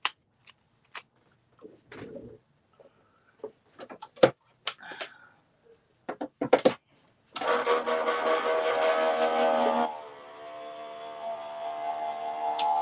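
Scattered small clicks and taps of paper and craft tools being handled on a desk. About seven seconds in, music starts suddenly with a loud sustained chord, dropping to a softer level about ten seconds in and carrying on.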